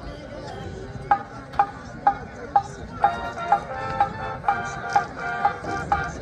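Marching band starting its opener. After about a second of crowd noise, a sharp, ringing percussion beat comes in at about two strikes a second. Around three seconds in, the band adds sustained chords over it.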